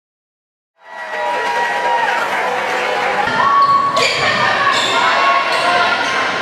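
Silence for under a second, then gym crowd chatter and voices echoing in a large hall, with a ball bounced on the hardwood floor four times, about 0.7 s apart, in the second half.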